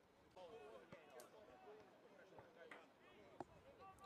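Near silence with faint, distant voices from players on the pitch, and a light tap about three and a half seconds in.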